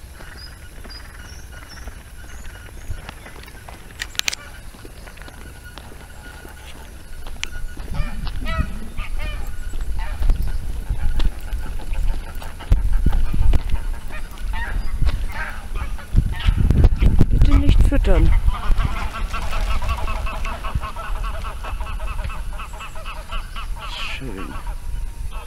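Geese honking in scattered calls, then in a long run of rapid repeated honks near the end. A low rumble sits underneath from about a third of the way in.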